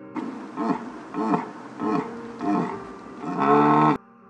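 A stag calling: four short calls that rise and fall in pitch, about 0.6 s apart, then a longer held call near the end, the loudest of the series.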